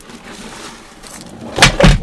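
Cardboard shipping box being handled with a rustling scrape, then two loud thumps close together near the end as its plastic-wrapped contents tumble out.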